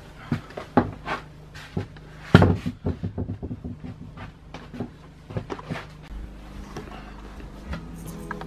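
Irregular knocks and thumps of hands and body working in a wooden stud wall while rock wool insulation batts are pushed into the bays between the studs; the loudest thump comes about two and a half seconds in, and the knocks grow sparser after about six seconds.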